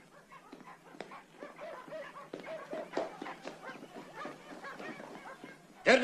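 A dog yelping and whining in short repeated cries, faint, among scattered knocks.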